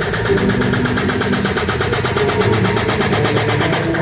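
Live IDM electronic music played on an Ableton Push: a section without the deep kick and bass, made of rapid buzzing stuttered pulses over steady high hi-hat ticks. The deep bass comes back right at the end.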